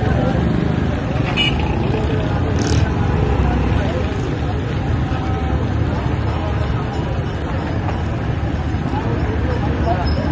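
Busy street ambience: steady traffic and background chatter around a roadside food stall, with a brief sharp click about three seconds in.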